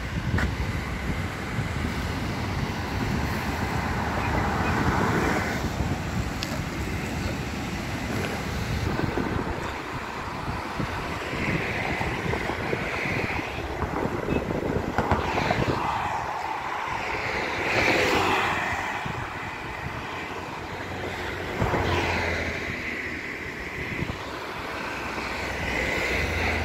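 Road traffic crossing a bridge: cars and trucks pass one after another, each swelling and fading, the loudest about two-thirds of the way in, with wind buffeting the microphone.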